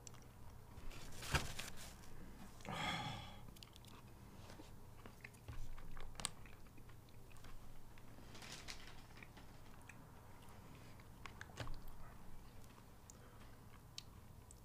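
Quiet chewing of a bite of a chocolate-coated Oreo ice cream bar, with a few short crunches of the coating scattered through, the sharpest a little over a second in.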